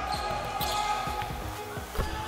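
A basketball being dribbled on a hardwood court during live play.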